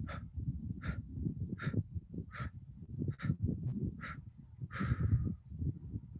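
A woman breathing out the eight-count exhale of 4-7-8 breathing in short 'bump' breaths. Seven quick puffs come about three-quarters of a second apart, and the last one is drawn out longer.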